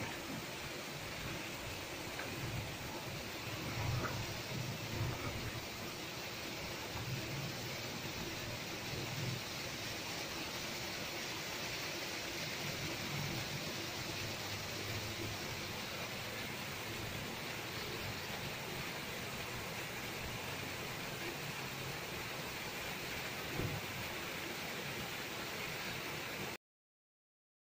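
Muddy floodwater pouring over a stone culvert wall in a steady rushing noise, with a few low rumbles in the first ten seconds.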